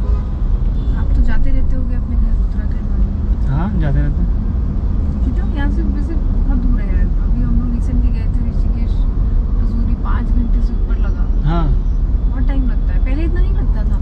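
Steady low rumble of a car's engine and tyres heard from inside the cabin while driving, with a few brief snatches of quiet talk.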